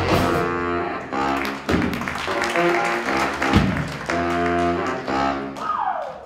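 A jazz big band playing: saxophones, trombones and trumpets over piano, upright bass and drum kit, in rhythmic phrases with drum hits. Near the end one note falls in pitch.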